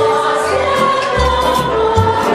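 A women's choir singing in held, sustained notes, with a deep bass note joining in a little past the middle.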